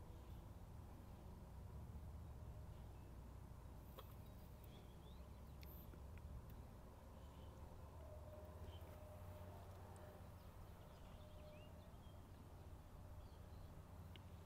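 Near silence outdoors: a low steady rumble with a few faint, brief bird chirps now and then.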